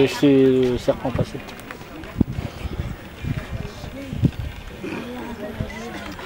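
People talking: one voice loud for about the first second, then quieter scattered talk, with two sharp taps about two and four seconds in.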